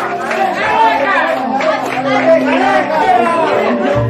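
Many people talking and calling out at once: lively overlapping chatter of a crowd in a room.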